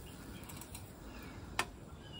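A low steady background with faint bird chirps and a single sharp click about one and a half seconds in, from the perforated metal pizza peel being handled at the oven mouth.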